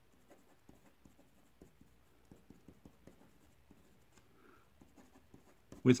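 Marker pen writing on paper: a quick run of faint short scratching strokes as letters are written out.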